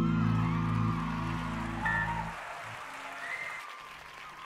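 A long sustained low chord from the band rings out at the end of a song and cuts off about two seconds in, while a large crowd applauds and cheers, with whistles.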